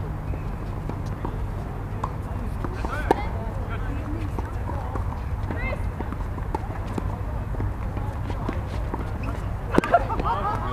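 Tennis ball struck by a racket and bouncing on a hard court: a sharp pop about three seconds in and two quick pops near the end. A steady low rumble and faint voices sit underneath.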